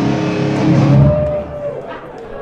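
Live metal band breaking into a loud burst of distorted electric guitars and drums that rings out and fades after about a second and a half, with one held guitar note in the middle.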